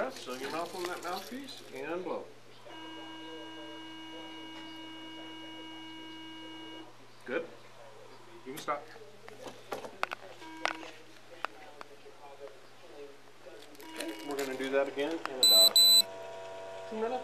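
Electronic tones from a breath alcohol testing instrument while it gets ready for a test: a steady tone lasting about four seconds, a brief tone a few seconds later, and a quick run of loud, high-pitched beeps near the end.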